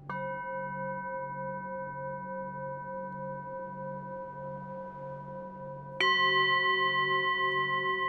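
Singing bowl struck and left ringing in a steady, layered tone. About six seconds in a second, louder strike adds a lower set of tones around G, the throat-chakra tone, over a low pulsing hum.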